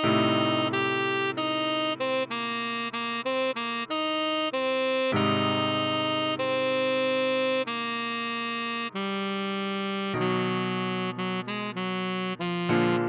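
Tenor saxophone playing a pop melody note by note over sustained keyboard chords: a run of short notes, then longer held ones.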